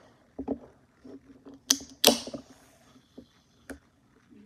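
A carbonated soda can being opened: a sharp crack of the tab about one and a half seconds in, then a louder snap with a short hiss of escaping fizz. A few lighter clicks and taps of handling come before and after.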